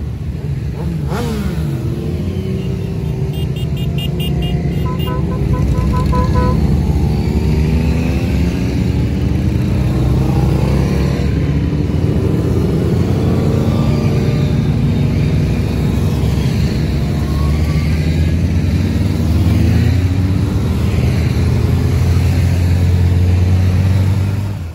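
A column of motorcycles riding past one after another, their engines rising and falling in pitch as each accelerates by, with a deep engine close by near the end. About three seconds in, a rapid string of short beeps lasts a few seconds.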